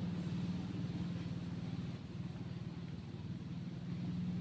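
A distant engine running steadily with a low hum.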